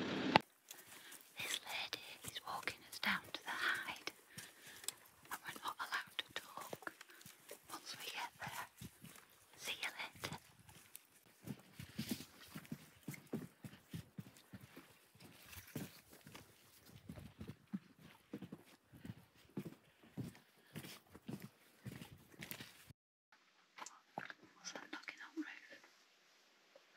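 Hushed whispering voices with footsteps clicking on wooden boardwalk planks, cut off abruptly a few seconds before the end.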